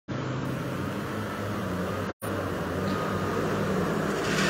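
Steady low hum of motor vehicle engines on the street, with the sound dropping out completely for a moment just after two seconds in.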